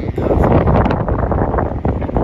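Wind buffeting a phone microphone, a loud, uneven rush heaviest in the low end.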